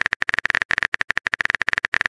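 Phone keyboard typing sound effect: rapid, evenly spaced key clicks, more than ten a second, each with a high, bright tone.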